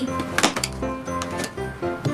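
Perforated cardboard advent-calendar door being pushed and torn open: a cluster of short, sharp clicks and crackles about half a second in and another near the end, over steady background music.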